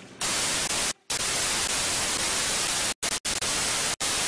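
Television static: a loud, even hiss of white noise that starts just after the beginning and cuts out briefly about a second in and twice near the three-second mark.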